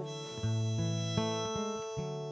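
Acoustic guitar strumming chords while a harmonica in a neck rack plays held notes over it; new strums come in about half a second and a little over a second in.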